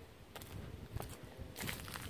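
Footsteps and rustling through a mulched garden bed, a few soft crackles and crunches over a low rumble.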